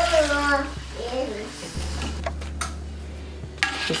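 Water pouring onto chopped collard greens in a nonstick pot, followed by a few light clicks and knocks of a utensil against the pot.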